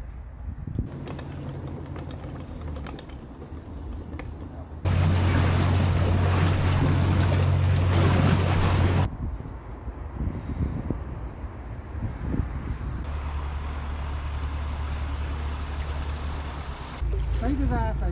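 Narrowboat's diesel engine running steadily with a low hum, mixed with outdoor wind noise. The level jumps up and down abruptly a few times, loudest for about four seconds in the middle.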